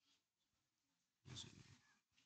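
Near silence: room tone, with one faint short sound lasting under a second, about a second and a quarter in.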